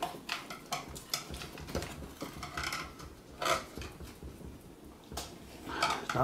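Small clicks and taps of a screwdriver and screws working against a clear plastic robot collar assembly as a screw is tightened, with a brief louder scrape about three and a half seconds in.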